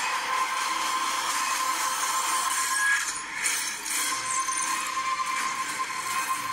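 Movie trailer soundtrack played back over a speaker: a dense, noisy wash of battle sound effects with music underneath, with no dialogue.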